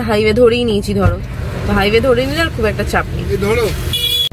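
A woman talking inside a car, with the car's steady low engine and road rumble underneath.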